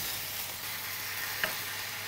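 Dried tilapia shutki frying in oil and masala in a pan, a steady sizzle, while a wooden spatula stirs and scrapes through it.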